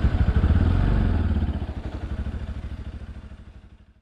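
Motorcycle engine running as the bike is ridden, a rapid even low pulsing, loudest in the first second or so and then fading away toward the end.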